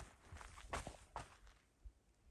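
Faint footsteps on desert ground: about five short, quick steps in the first second and a half, then they stop.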